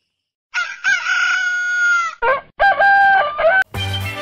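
A rooster crowing: a long drawn-out crow starting about half a second in, then a second, shorter call.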